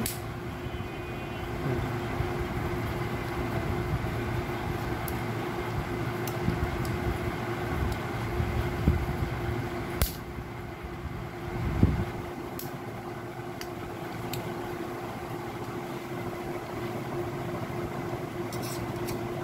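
A few sharp clicks of small metal parts as a fuser heat roller's gear, bearing and bracket are handled and fitted, over a steady mechanical hum. A louder low thump comes just before the twelve-second mark.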